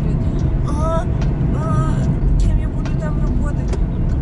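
Steady low rumble of a car driving, heard from inside the cabin, under a woman's talk.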